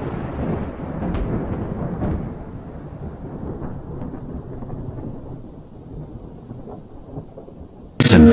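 Thunderstorm sound effect: a long, low roll of thunder that slowly dies away, with a hiss of rain.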